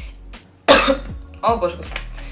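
A woman's single loud cough, sharp and short, about two-thirds of a second in, followed by a brief bit of her voice.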